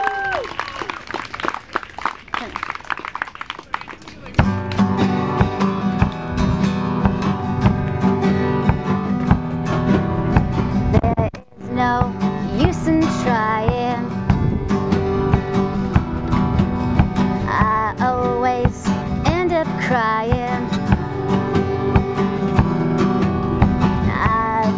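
A live band, drum kit and acoustic guitar, starting up a song: the music comes in loudly about four seconds in and keeps going, with a brief break near the middle.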